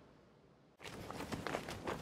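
Quiet room tone, then from just under a second in, the footsteps of a person running past outdoors, a quick irregular patter of steps.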